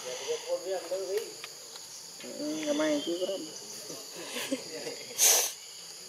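Insects keep up a steady high buzz in the background. Wavering, voice-like calls come near the start and again in the middle. A short, sharp burst of noise, the loudest sound, comes about five seconds in.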